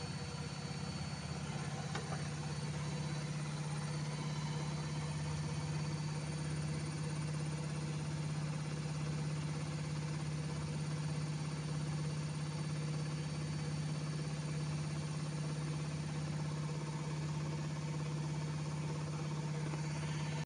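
Bosch front-loading washing machine running with a carpet in the drum, giving a steady low hum that does not change.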